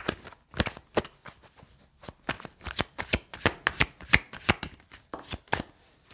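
A deck of tarot cards shuffled by hand: a quick, irregular run of sharp card slaps and flicks, with a short pause about a second and a half in.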